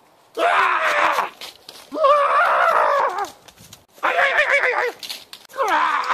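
A man screaming as he runs away: four long yells with wavering pitch, each about a second long, with short quiet gaps between them.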